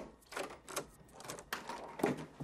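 Several soft, irregular clicks and taps.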